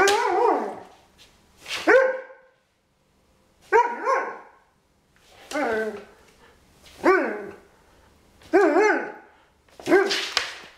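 Irish setter barking playfully, about six drawn-out barks whose pitch bends up and down, each under a second long and spaced a second or two apart.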